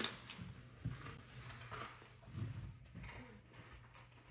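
A person faintly chewing a mouthful of meatball and raw green bell pepper, with a few small mouth and bite sounds.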